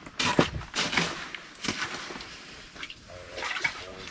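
Water splashing in an ice-fishing hole as a crappie is let go back into it, a few quick splashes in the first two seconds, then quieter sloshing.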